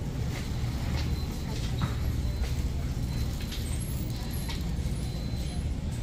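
Wire shopping cart rolling along a store floor: a steady low rumble from its wheels, with light scattered rattles and clicks from the basket.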